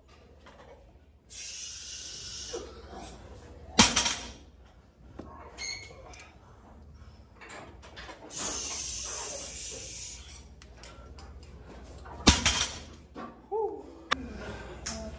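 A loaded 385 lb barbell set down hard on the gym floor during deadlift reps: two heavy clanking thuds of the plates about eight and a half seconds apart, with stretches of hiss between them.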